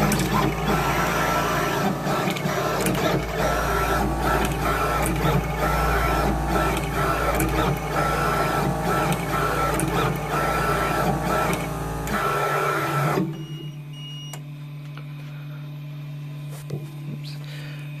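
CHMT36VA desktop pick-and-place machine running a placement cycle. It moves in quick stop-start bursts, with rapid clicks and a repeating whine over a low rumble. It stops about 13 seconds in, leaving a steady hum.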